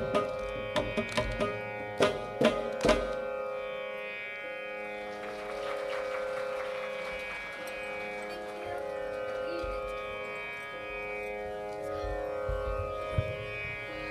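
The close of a Carnatic piece on violin and mridangam. A run of mridangam strokes stops about three seconds in, and the violin's held tones and a steady drone then ring on to the end.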